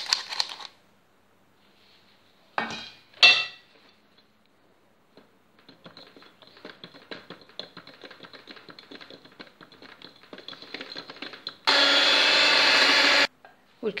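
Electric hand mixer beating sifted flour and cocoa into creamed butter batter in a glass bowl: several seconds of faint ticking and scraping from the beaters, then the motor runs loudly and steadily for about a second and a half near the end. Two short knocks come about three seconds in.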